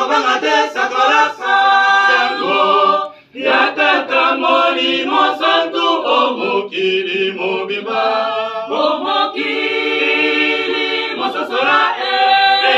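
A small group singing together unaccompanied, a cappella, with a brief break about three seconds in.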